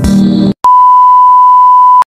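The end of a short music jingle, then after a brief gap a click and a steady, loud test-pattern beep, the single-pitch reference tone that goes with colour bars, held for over a second and cut off suddenly.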